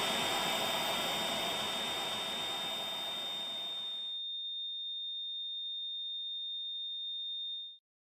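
A single steady high-pitched electronic tone over a background hiss; the hiss cuts off about four seconds in, and the tone carries on alone until it stops shortly before the end.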